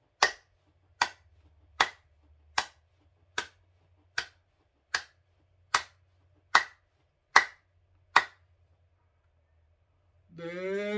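One person's hand claps keeping a slow, even beat, about one every 0.8 seconds, eleven in all, stopping about eight seconds in.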